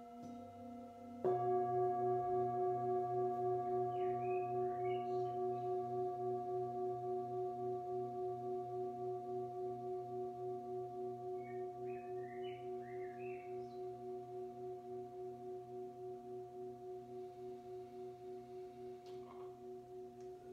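Metal singing bowl struck with a mallet about a second in, over a softer ring already sounding, then a long ringing tone that slowly fades with a steady wobble in loudness.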